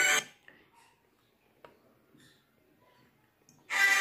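Music cuts off just after the start, leaving near silence broken by two faint clicks, about half a second and a second and a half in. The music returns shortly before the end.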